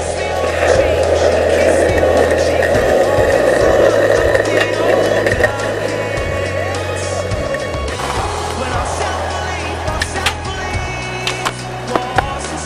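Skateboard wheels rolling on rough concrete, a steady grinding rumble for the first half, under a background song. A few sharp clacks of the board come near the end.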